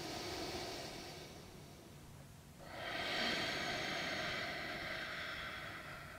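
A man taking slow, deep breaths while holding a plank: a softer breath first, then a longer, louder one starting just under three seconds in.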